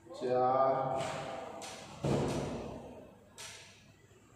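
A man's voice with a single thump about two seconds in and a short hiss a little later.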